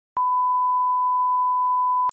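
Television test-pattern tone: a single electronic beep at one steady pitch, coming in with a slight click just after the start and holding unchanged.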